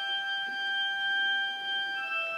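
Pipe organ holding a single high note, steady and unchanging.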